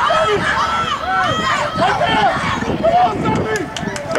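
Several voices shouting and cheering at once, sideline players and spectators yelling during a football play, with a few sharp clicks near the end.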